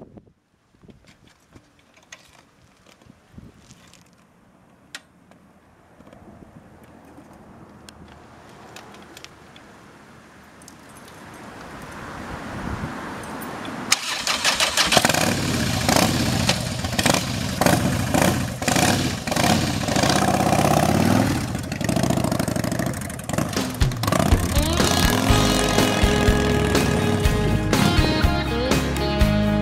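1997 Harley-Davidson Fat Boy's V-twin engine starting about halfway through and then running loud. Faint clicks before it; music comes in near the end.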